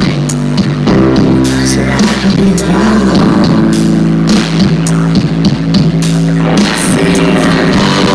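Live rock band playing loud through a PA: electric guitar over a drum kit, continuous.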